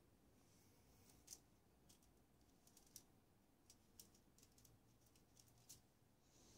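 Near silence with about a dozen faint, irregular light ticks and scratches: a fine paintbrush dabbing and flicking highlights onto a stretched acrylic canvas.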